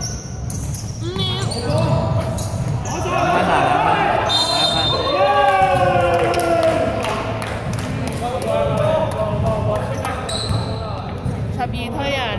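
A basketball bouncing on a hardwood gym court, with short knocks throughout, while players shout, loudest in the middle. The sound rings in a large echoing sports hall.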